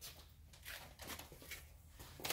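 Oliver 797-32 bread slicer's electric motor running with a faint steady low hum, described as a nice quiet motor, with soft handling rustles.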